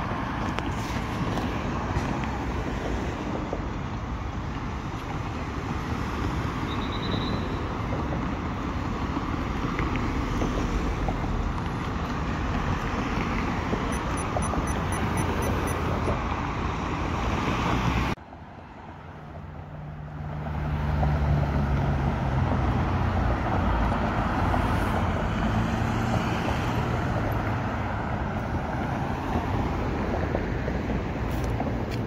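Steady road traffic noise from cars passing on a city street below. About 18 seconds in it drops away suddenly, then a low engine hum comes up and the steady traffic noise returns.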